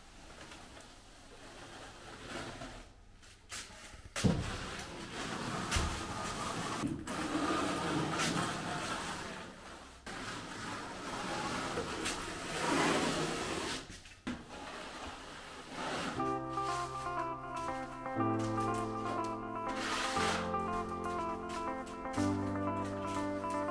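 Steel notched spatula scraping through wet render base coat on a wall in strokes a few seconds long, with a few sharp knocks along the way. About three-quarters of the way through, background music with clear sustained notes comes in.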